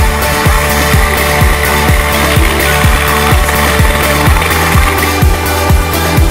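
Electronic dance music track with a steady kick-drum beat about twice a second over a held bass line, with a hissing swell in the upper range through the middle.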